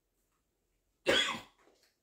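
A man coughs once, a short cough about a second in, between near-silent pauses.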